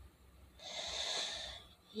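A person's heavy exhale, a sigh of about a second starting about half a second in.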